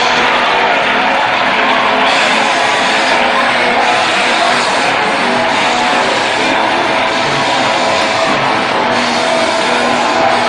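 Loud, steady din of music and many voices together from a packed congregation, a dense wash with no clear words standing out.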